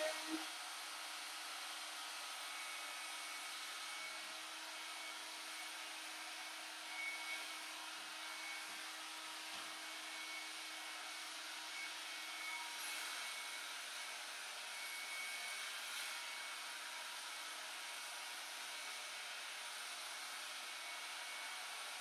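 Corded hot-air brush, a hair dryer with a round brush head, blowing air steadily as it is worked through hair, with a faint hum that drops away about halfway through.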